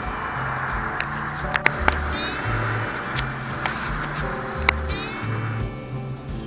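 Background music with a slow, changing bass line, over a steady hiss of heavy rain that drops away near the end. A few sharp taps stand out, the loudest about two-thirds of a second apart in the second second.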